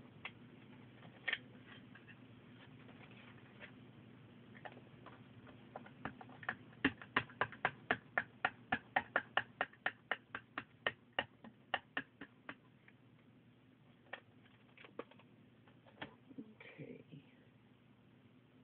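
A quick, even run of light clicking taps, about four a second for some six seconds, as a clear plastic stamping sheet is pressed down repeatedly by hand onto a paper tag. A few scattered single taps come before and after, with a brief soft rustle near the end.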